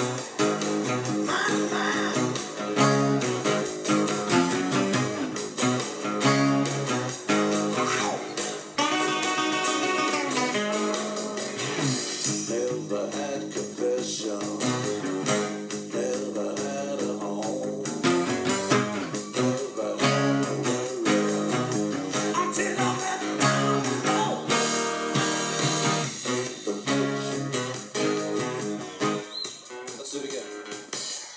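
Steel-string cutaway acoustic guitar playing rock chords and riffs along with a full band recording that has drums and bass.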